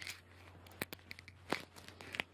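Crinkly rustling and a string of short, sharp crackles as bedding is handled and settled, the loudest about halfway through, over a low steady hum.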